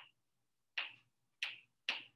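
Chalk writing on a blackboard: four short strokes about half a second apart.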